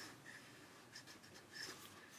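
A few faint pencil strokes scratching on drawing paper, barely above near silence.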